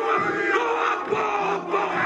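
A group of men shouting a Māori haka in unison, loud chanted battle cries.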